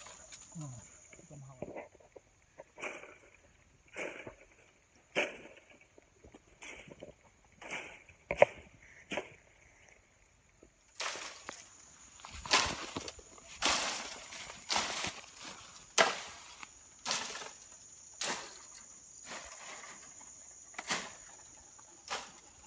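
Dry bamboo stems and leaves rustling, cracking and snapping in short separate bursts as someone pushes and climbs through a bamboo thicket. The bursts come about once a second at first, then grow louder and closer together about halfway through.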